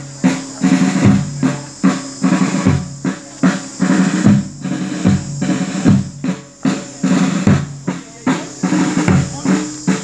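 Procession band drums, snare and bass, beating a steady marching beat of about two strokes a second, with held low notes sounding beneath the drums.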